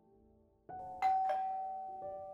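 Doorbell chiming a ding-dong: after a silent start, the notes strike about a second in and ring on, fading slowly.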